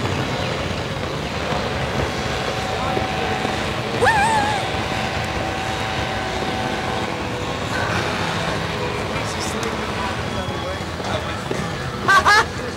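Steady rushing noise on a Slingshot ride capsule's onboard microphone as the capsule swings and settles, with a brief wavering voice about four seconds in and a faint steady tone for several seconds.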